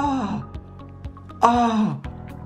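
A man moaning in pain twice, each moan sliding down in pitch, just after a wax strip was torn from his leg. Background music with a steady beat plays underneath.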